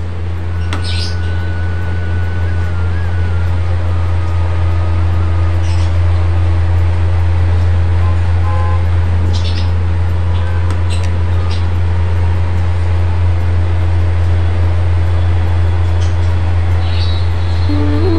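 A loud, steady low hum, with a few faint clicks scattered through it.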